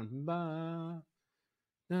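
A man's voice holding one syllable at a steady pitch for about a second, then silence.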